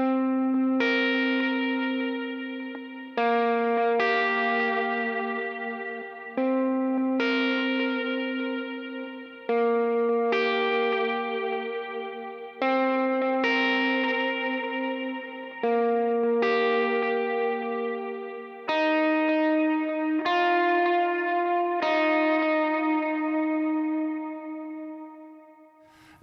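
Gretsch electric guitar playing an open, sparsely picked chorus part through a dotted-eighth delay and ambient 'cloud' reverb. A new pair of picked notes comes in about every three seconds, each ringing out and dying away, and the last one fades out near the end.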